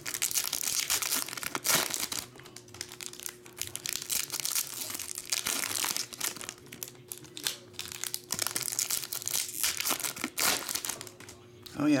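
Foil trading-card pack wrapper crinkling in irregular bursts as it is torn open by hand and the cards are slid out.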